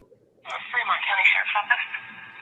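A voice speaking over a telephone line in a recorded 911 emergency call, thin and narrow-sounding, starting about half a second in, over a faint low hum from the line.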